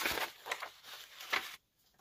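Paper rustling as sheets of a spiral-bound pad are lifted and turned, in a few short crinkles, with a moment of dead silence near the end.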